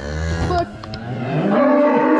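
Calves bawling: a low moo falling in pitch at the start, then a longer call that rises in pitch about a second in and is held.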